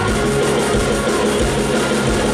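Live rock band playing, with drum kit and electric guitar, and a long held note over them.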